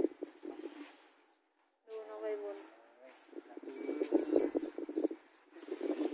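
Shuffling and scuffing on sandy dirt as a baby elephant and its mahout push and tussle, in short irregular knocks. A brief voice or call sounds about two seconds in.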